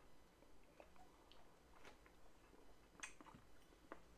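Near silence: faint mouth sounds of a person sipping and tasting neat bourbon, with a few faint small clicks near the end.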